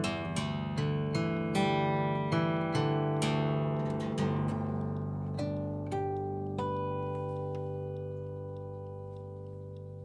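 Harp guitar played fingerstyle in the closing phrase of the song: a run of plucked notes over sustained low notes, thinning to a few last notes and a final chord left to ring out and fade.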